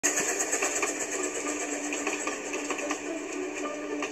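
A Ffestiniog Railway narrow-gauge steam train running past with a quick, even rhythmic clatter, heard through a TV speaker.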